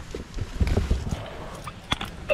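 Footsteps with a few low thumps, and a sharp click near the end.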